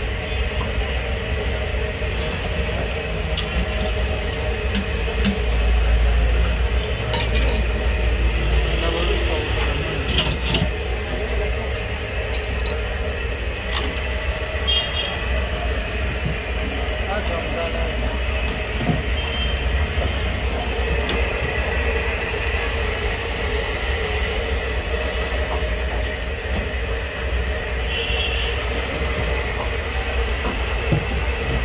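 Busy street food stall ambience: a steady low rumble and hiss, with voices in the background and a few sharp metal clinks, the clearest about ten seconds in.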